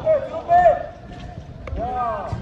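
Men shouting short calls during a football match, two loud shouts in the first second and another beginning near the end.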